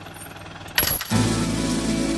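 A heavy steel gate chain clanks sharply once, a little under a second in. Just after, steady background music with low held tones comes in.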